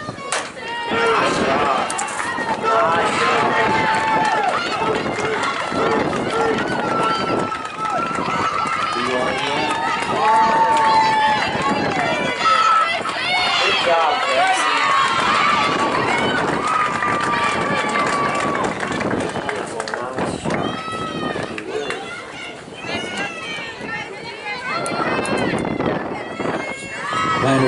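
Many voices from softball players and spectators shouting and cheering over one another, with several long held yells; the chatter eases off a little near the end.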